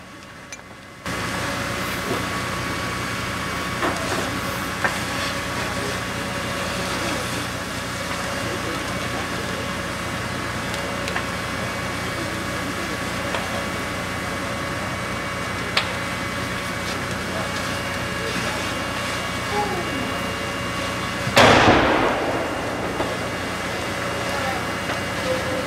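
A fire engine standing by at a burning car, its engine running as a steady drone with several held tones that comes on suddenly about a second in. Faint pops and ticks come from the fire. About 21 seconds in there is a loud rushing burst lasting about a second.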